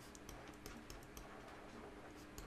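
Faint, irregular light ticks of a pen stylus tapping on a drawing tablet while figures are written, over a faint steady low hum.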